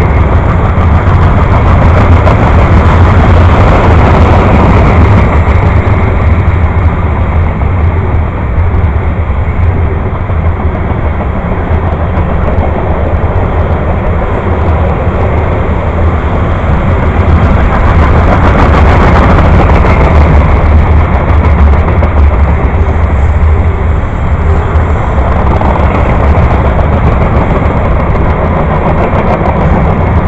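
Freight train of covered hopper cars rolling past close by: a steady, loud rumble of steel wheels on the rails.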